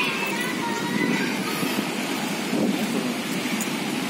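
Steady outdoor ambience of traffic on a nearby street, mostly motorcycles, with faint voices of people in the distance.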